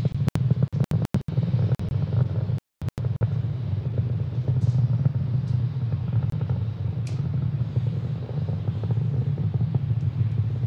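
Falcon 9 rocket engines heard from the ground as a steady low rumble during ascent. The sound cuts out briefly several times in the first three seconds.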